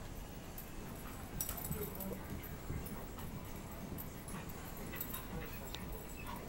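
Two dogs play-wrestling on carpet: faint scuffling of paws and bodies with occasional soft dog noises.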